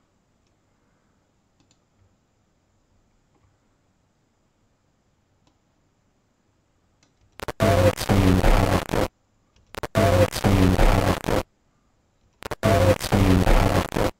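A short, harsh, distorted recording from the InClip inverse-clipper microphone channel, played back three times in a row: a buzzy, crackling signal with a pitched, voice-like pattern inside it, which the experimenter takes for a spirit's imprint on the sound. It comes after several seconds of near silence with a few faint clicks.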